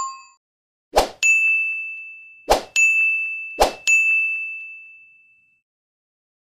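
Subscribe-animation sound effects: three times, a quick whoosh followed by a bright bell-like ding that rings on and fades. The last ding dies away about two thirds of the way through.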